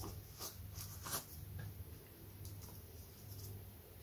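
Hobby knife blade cutting through a paper template into thin 1/16-inch balsa sheet: a few faint, short scratching strokes in the first second or so, then only a low steady hum.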